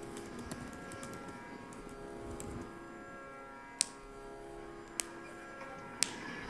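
Quiet room tone: a faint steady hum of several held tones, broken by two sharp clicks a little over a second apart in the second half.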